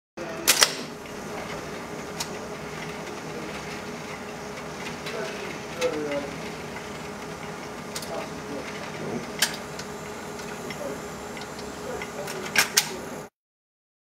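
Jukebox record changer at work: a few sharp mechanical clicks and clunks several seconds apart over a steady low hiss, with faint voices in the background. The sound cuts off about a second before the end.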